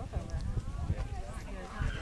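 Hoofbeats of a pony cantering on the dirt of an arena, heard as irregular low thuds, with faint voices in the background.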